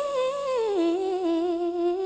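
A woman's solo voice holding a long sung note with vibrato, unaccompanied, that drops to a lower pitch a little under a second in.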